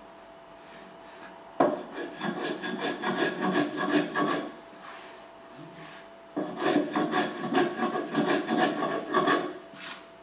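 A hand tool cutting across an oak stool seat in quick back-and-forth scraping strokes, in two runs of a few seconds each with a short pause between.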